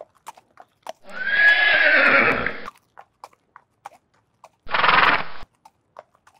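A horse whinnying for nearly two seconds about a second in. Near the end comes a shorter, breathy burst, with a few faint scattered clicks in between.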